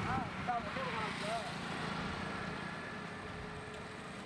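Road traffic on a highway running steadily and slowly fading, with a few short rising-and-falling calls in the first second and a half.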